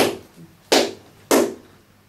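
Three sharp hand claps, each about two-thirds of a second apart, close to the microphone, each trailing off in a short room echo.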